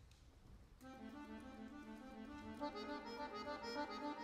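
Accordion starts playing about a second in after a near-silent pause, with held chords, then grows louder and busier near the end with quicker moving notes.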